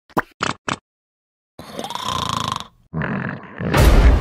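Cartoon vocal sound effects for an animated larva: three quick short sounds, then a drawn-out voice noise lasting about a second, and a sudden loud thump near the end.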